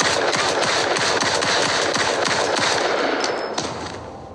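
A loud, dense run of rapid cracks and bangs from the TV episode's sound effects, fading out after about three and a half seconds.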